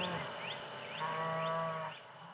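A cow lowing once, a low call lasting just under a second from about a second in, over short rising chirps repeated about twice a second.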